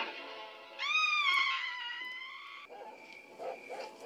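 A woman's single long, high-pitched scream from the film's soundtrack, lasting about two seconds and sagging slightly in pitch, followed by a faint held tone.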